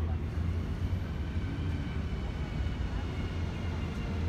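Steady low engine drone with a faint high whine above it, and distant voices.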